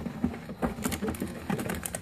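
Trading-card packaging being handled as a code card and foil booster packs are lifted out of a tin: a quick run of light clicks and crinkles, busiest in the second half.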